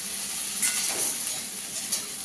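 Mixed vegetables sizzling as they are stir-fried in a metal kadai, with a steady hiss. The steel spatula clicks against the pan twice, once a little after half a second in and once near the end.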